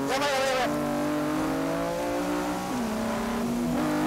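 Honda NSX V6 engine heard from inside the race car at speed, its note sagging slowly, dropping in pitch about two-thirds through and climbing again near the end.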